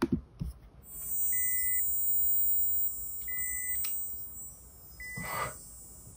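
Electronic sound design from a music-video teaser: a steady high-pitched whine that comes in about a second in, with three short beeps at one pitch about two seconds apart, and a brief noisy burst near the end.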